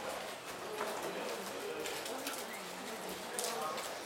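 Low, repeated cooing bird calls over a soft murmur of voices, with a few light clicks.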